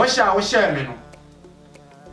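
A man's voice for about the first second, a short utterance falling in pitch, then only faint steady background music.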